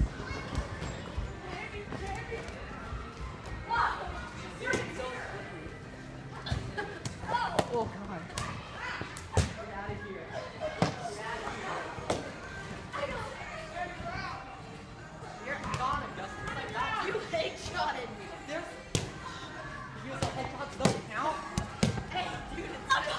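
Small rubber dodgeballs thrown and smacking off trampoline beds, padding and walls: a dozen or so sharp thuds at irregular moments, the loudest about nine and nineteen seconds in, over indistinct shouting and chatter from the players in a large echoing hall.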